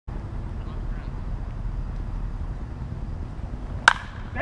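A single sharp crack of a baseball bat squarely striking a pitched ball near the end, hit hard enough to sail for a home run. A steady low rumble sits underneath.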